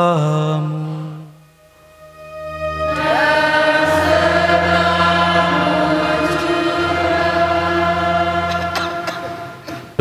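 A priest's sung liturgical phrase ending about a second in. From about two and a half seconds in, a congregation sings its response in long-held notes over a sustained low accompaniment.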